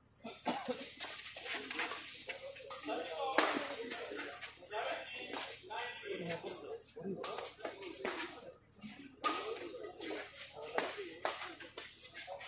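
Badminton rally: racket strings striking a shuttlecock again and again in quick exchanges, the sharpest hit about three and a half seconds in, with spectators' voices and calls around it.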